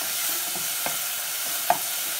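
Onion and curry-leaf masala sizzling in hot oil in a saucepan as a spatula stirs and scrapes it, with a steady hiss throughout. The spatula knocks against the pan a couple of times, most sharply near the end.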